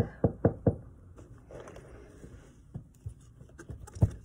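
Knocking on a hard surface, in imitation of a knock on a door: four quick knocks within the first second, then a few fainter taps.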